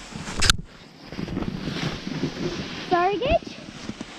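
Snowboard sliding and scraping over snow, with a sharp knock about half a second in. A short rising shout cuts in about three seconds in.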